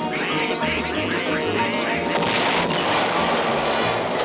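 Cartoon background music with birds squawking over it. A little past halfway, a dense, rapid rattling commotion builds up.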